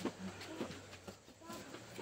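Faint voices of people talking at a distance, with a steady low hum underneath and a few light clicks.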